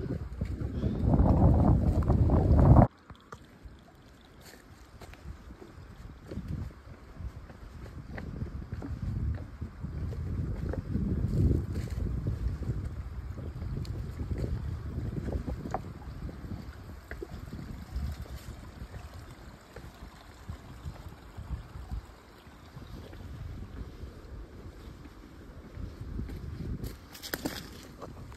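Wind buffeting the microphone, heavy for the first three seconds and cutting off abruptly, then lighter gusting wind noise with faint footsteps on rocks and dry leaves.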